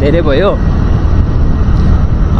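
Riding noise from a moving two-wheeler: a loud, steady low rumble of wind rushing over the microphone with the engine running beneath it. A voice is heard briefly at the very start.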